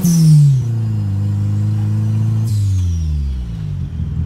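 Turbocharged VW Voyage engine heard from inside the cabin as the driver lifts off the throttle. The engine note drops with a falling hiss at the start, holds steady, then drops again with a second, fainter hiss about two and a half seconds in as the car slows.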